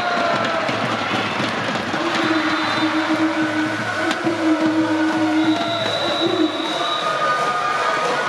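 Gymnasium crowd noise from packed stands, with the cheering section sounding long held tones of about a second each, and a single sharp ball strike about four seconds in.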